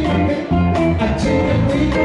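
Live blues band playing: electric guitar over a strong bass line, with a woman singing.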